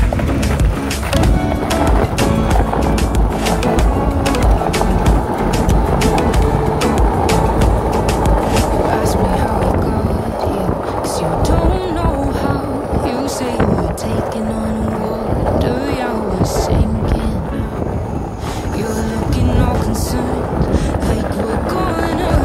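Skateboard wheels rolling over tiled paving with a steady rumble and many sharp clicks, under background music.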